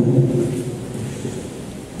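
A rumbling noise, with no distinct strikes, that fades gradually over about two seconds.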